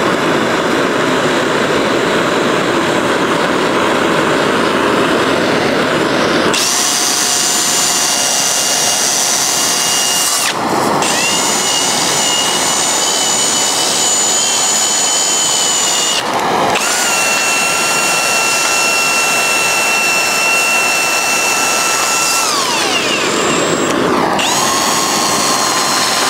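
Cordless drill spinning a brass wire wheel against torch-heated sheet steel, rubbing brass onto the hot metal, over the steady hiss of a handheld gas torch. About six seconds in the drill's high motor whine comes in. It stops and restarts twice, falls in pitch near the end, then starts again.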